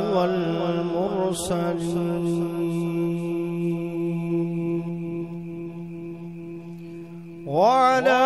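Chanted recitation over a public-address system with heavy echo trails off in the first second or so, leaving a steady low drone note that holds, fading slowly. Near the end a new voice begins a chanted phrase that rises in pitch.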